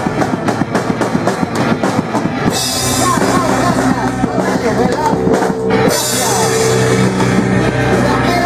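Punk rock band playing loud and live: fast, dense drumming for the first two and a half seconds, then held chords with crashing cymbals.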